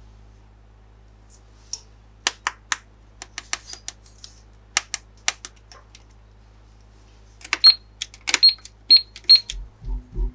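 Sharp plastic clicks and taps from handling a toy cash register and its play money and card. Near the end comes a quick run of key presses on the register, several of them followed by a short high beep.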